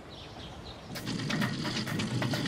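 Faint bird chirps in outdoor ambience. About a second in, a louder quick, irregular ticking over steady tones begins, the start of a music bed.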